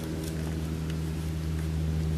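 Steady low machine hum made of several held tones, growing slightly louder across the two seconds.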